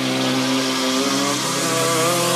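Psytrance breakdown: a held, buzzy synthesizer note with no drums under it.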